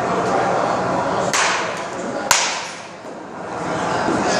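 A baseball bat strikes a ball with one sharp crack and a short ring about two seconds in, with a shorter, softer burst of noise about a second before it.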